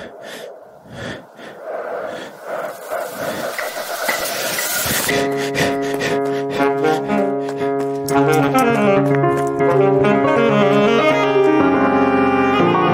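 Electronic backing of recorded breathing, a pulsing breath noise that swells for about five seconds. Then alto saxophone, palm-muted electric guitar and piano come in and play together.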